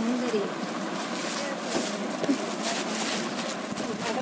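Background voices and chatter in a crowded shop, no one speaking close by, with rustling of sarees being handled.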